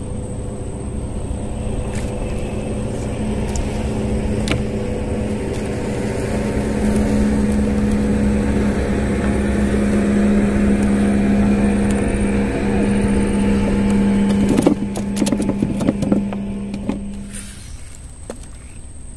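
A boat engine running steadily, its hum growing louder over the first ten seconds or so and cutting off abruptly near the end. A few sharp knocks and clatter come about three-quarters of the way in.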